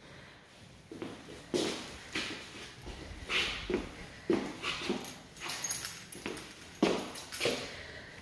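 Footsteps on a hard floor, about two steps a second, as someone walks across an empty room.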